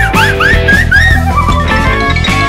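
Upbeat background music over a steady bass line, with a run of about five short whistle-like notes, each sliding up and dropping back, in the first second or so.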